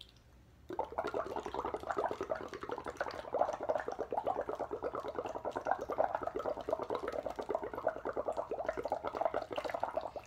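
Breath blown through a drinking straw into a plastic cup of water, bubbling rapidly and continuously; the bubbling starts about a second in.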